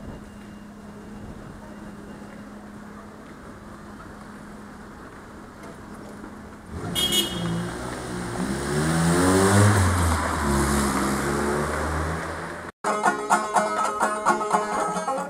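Quiet street ambience with a faint steady hum. About seven seconds in, a motor vehicle drives past close by, its engine note rising and then falling away. After an abrupt cut near the end, a banjo is plucked.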